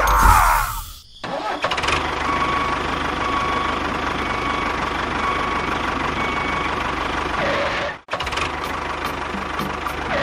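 Tractor engine sound running steadily with a low, even chug. It opens with a loud sound falling in pitch in the first second, and breaks off briefly about eight seconds in.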